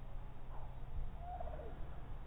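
Outdoor background: a steady low rumble with a few faint, short bird calls.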